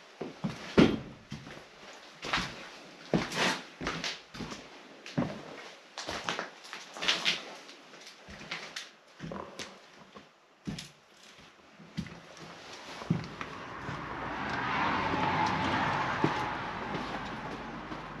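Footsteps and knocks on a debris-strewn floor, irregular at about one or two a second. Over the last few seconds a rushing noise swells and fades.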